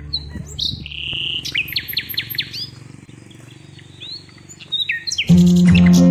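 Small birds chirping: sharp high chirps and whistled glides, with a quick run of repeated rising notes. Near the end, strummed acoustic guitar music cuts in loudly.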